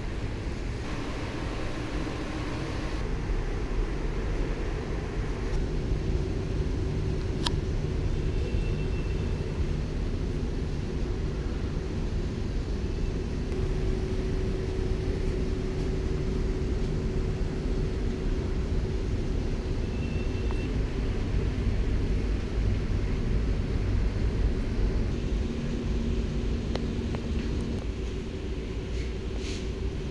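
Steady low background rumble with a faint steady hum and one brief click about seven seconds in.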